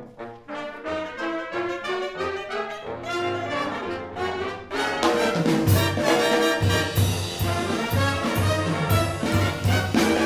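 Jazz big band playing live: brass section figures at first, then about halfway the full band comes in louder, with regular low drum and bass hits under the horns.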